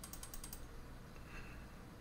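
Faint computer-mouse clicks, several in quick succession, as a browser zoom button is pressed repeatedly.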